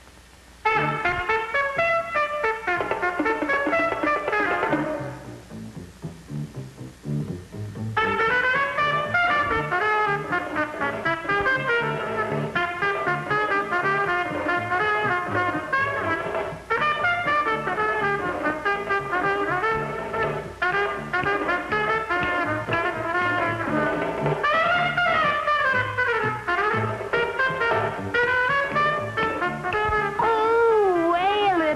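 Up-tempo jazz led by a trumpet over a steady bass line. It thins out to a quieter passage about five seconds in, and the full band comes back in around eight seconds.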